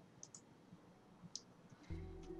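Near silence with a few faint, sharp clicks. Low music starts right at the end.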